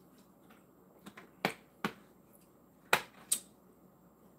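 A person drinking from a plastic bottle, making short, sharp gulping clicks. Three come about half a second apart, then two louder ones follow about a second later.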